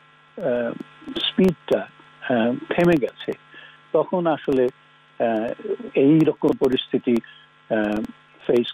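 A man's speech coming over a narrow-band remote video link, with a steady electrical hum running underneath it.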